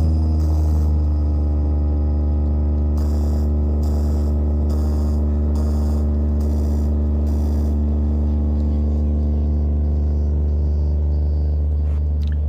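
Eight-box DJ bass speaker stack playing one loud, steady, deep bass tone with a buzzy edge of overtones; it cuts in abruptly. Faint even ticks, a little over one a second, sit over it between about three and seven seconds in.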